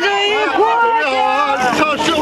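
A group of people singing a song together, unaccompanied, with voices holding notes and then stepping to the next pitch.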